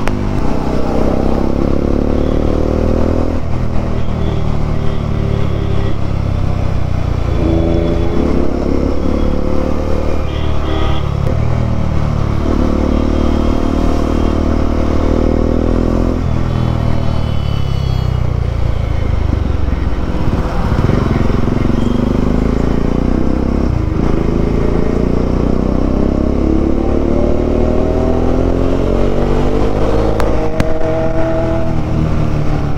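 Single-cylinder engine of a Bajaj Dominar 400 motorcycle, heard from the rider's seat at road speed. The revs climb over a few seconds, then drop and climb again several times as it is ridden hard through traffic, over a steady low rush.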